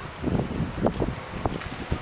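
Wind buffeting the microphone of a handheld camera, rising and falling in gusts.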